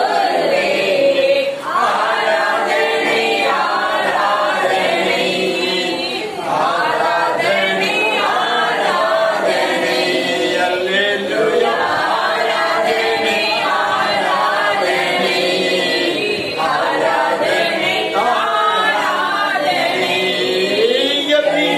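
Unaccompanied worship singing, several voices together without instruments.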